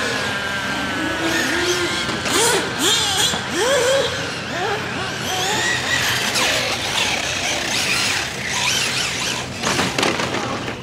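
Electric 1/8-scale RC on-road car (OFNA DM-One Spec-E with a Castle brushless power system) running laps. Its whine rises and falls in pitch with the throttle, and its tyres squeal through the corners.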